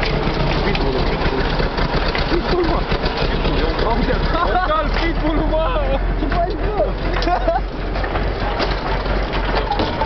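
Engine of a Russian-built timber-transport truck running steadily, heard from inside the cab, with a constant low drone and frequent rattles from the cab.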